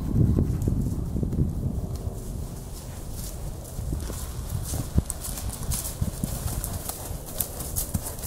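Hoofbeats of a horse cantering over woodland ground. They are loud and close at first and grow fainter as it moves away, then come back as sharper clicks in the second half.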